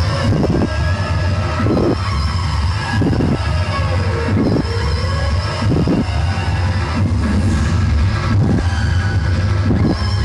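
Loud dance music played over a stage PA system, with a heavy steady bass and a strong beat about every second and a quarter.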